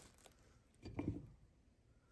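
Quiet room with faint handling noises from cookies being moved on a ceramic plate: a light tick just after the start and a brief soft sound about a second in.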